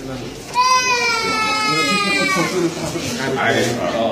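An infant crying: one cry of about two seconds starting half a second in, its pitch slowly falling, over people talking.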